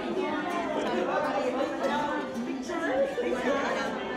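Several people talking at once in a room: indistinct chatter and voices, no single sound standing out.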